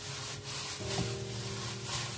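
Plastic-gloved hand kneading minced pork in a stainless steel bowl: repeated rubbing, rustling strokes, about two a second, over soft background music.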